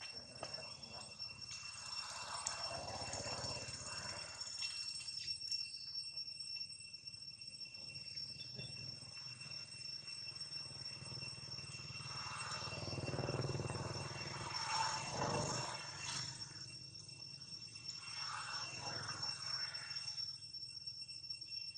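Insects singing in a steady, high-pitched drone, with stretches of soft, indistinct background noise rising and falling beneath it.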